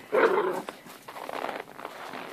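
A dog play-fighting gives one short, loud growling or barking vocalisation about a quarter of a second in. Quieter scuffling of paws in snow follows.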